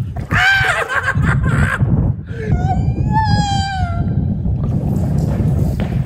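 A man yelling: a short high-pitched shout about half a second in, then one long drawn-out high wail that rises and falls, over a steady low rumble.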